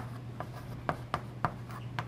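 Chalk writing on a chalkboard: a quick, irregular run of sharp taps and short strokes, about three a second, as a word is written out by hand.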